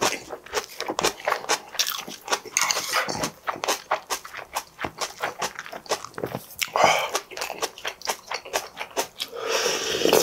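Close-miked chewing of a mouthful of crunchy vegetables and rice, with many small wet crunches and mouth clicks. Near the end comes a longer slurp of soup broth from a wooden spoon.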